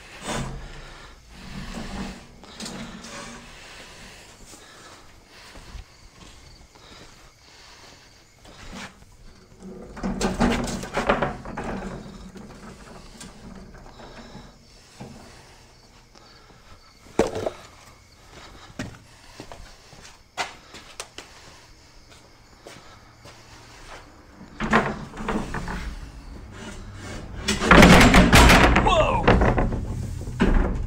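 Metal-framed storage rack being levered and moved about: scattered knocks and scrapes, a sharp knock partway through, then a loud metal clatter and scrape near the end as the rack comes down fast.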